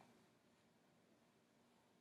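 Near silence: a faint room tone.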